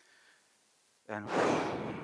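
After about a second of near silence, a man says "and" and lets out a long, breathy sigh close into a handheld microphone, the release of a held breath.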